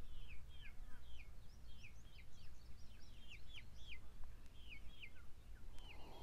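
Songbirds singing: runs of quick, downward-slurred chirps, repeated on and off, with a faint low rumble underneath.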